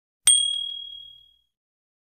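A click followed by a single bright bell ding that rings and fades away over about a second: the notification-bell sound effect of a subscribe-button animation.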